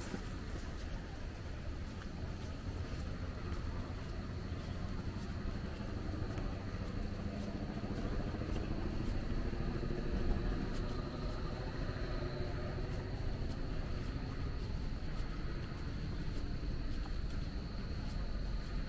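Outdoor ambience in woodland: a steady low rumble with a faint, steady high-pitched insect drone that becomes clearer about halfway through.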